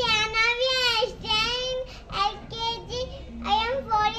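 A young girl singing alone, unaccompanied, in phrases of long held notes with short breaks between them.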